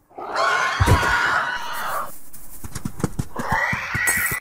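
Dinosaur screech sound effect for a CGI velociraptor-like creature: one long hissing screech of about two seconds, then a second, shorter, rising screech near the end, with scattered light thuds underneath.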